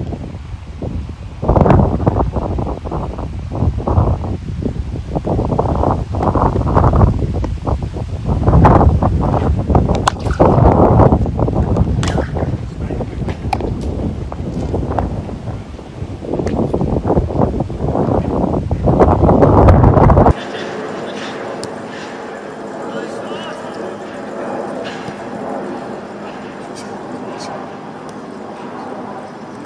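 Wind buffeting a phone microphone in loud gusts, with a few sharp cracks of bat on ball in cricket nets. About twenty seconds in, the sound cuts to a quieter, steady outdoor ambience with faint voices.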